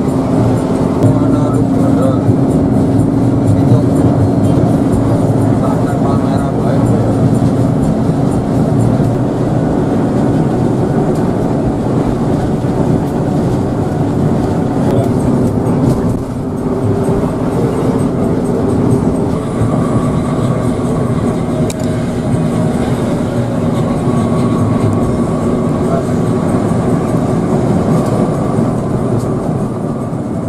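Cabin noise of a Hino RK8 coach cruising at speed: a steady drone of its diesel engine with tyre and road rumble, and a low hum that holds one pitch.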